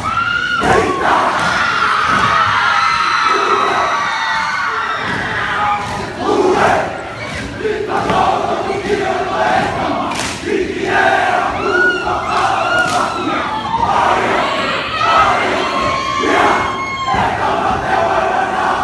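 Haka performed by a group of high-school football players: many male voices shouting the chant together, with a few sharp impacts, over a cheering crowd in a gymnasium.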